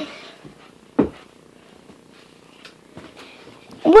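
A single dull thump about a second in, with a faint low steady buzz underneath.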